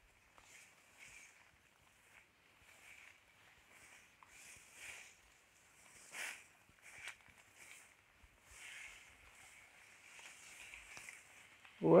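Faint, irregular rustling of tall Mombaça grass among grazing cattle, with a few louder brushes and rips of the leaves along the way.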